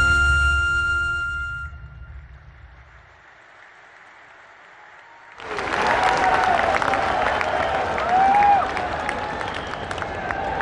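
Flute-led music fades out over the first couple of seconds, a held high note dying away. After a short lull, an audience bursts into applause about five seconds in and keeps clapping, with a few voices over it.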